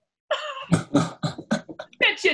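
People laughing in a quick run of short, breathy bursts. The laughter starts about a third of a second in, just after a sung ukulele song ends.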